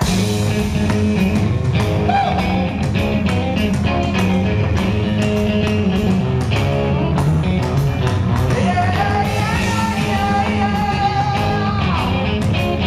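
Live rock band playing loud: distorted electric guitars, bass and a drum kit crash in together at the start and drive on steadily, with male lead vocals over them.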